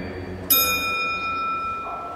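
A bell struck once, about half a second in, ringing with a high, clear tone that fades slowly.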